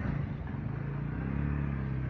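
A road vehicle's engine running close by, its pitch rising slightly about a second in.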